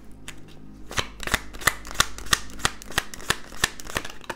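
Tarot cards being shuffled by hand: a quick run of sharp card snaps, several a second, from about a second in until near the end.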